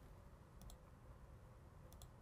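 Near silence: room tone with two pairs of faint clicks from a computer mouse, one pair about half a second in and one near the end.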